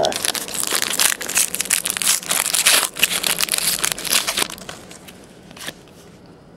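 Foil wrapper of a 2010 Panini Certified football card pack crinkling as it is torn open by hand: a dense run of crackles for about four and a half seconds, then dying down.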